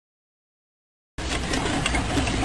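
Dead silence for about a second, then outdoor camera sound cuts in suddenly: a loud steady low rumble with hiss.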